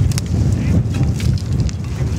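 Wind buffeting the microphone, heard as a loud, unsteady low rumble, with a few sharp clicks just at the start.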